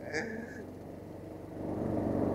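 Golf cart running along a path: a steady low hum that grows louder near the end, with a short bit of voice at the start.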